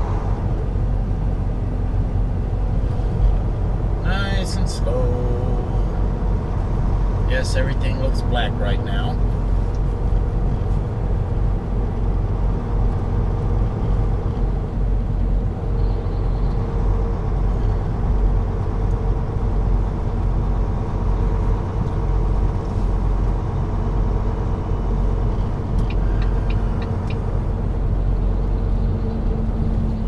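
Volvo semi truck cruising on the highway: a steady, loud low drone of the diesel engine and road noise as heard inside the cab. Short voice-like sounds come twice in the first ten seconds.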